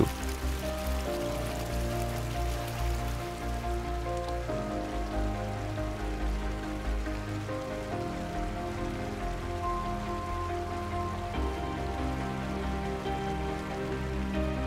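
Background music: slow, sustained ambient chords over a low bass, changing about every three to four seconds.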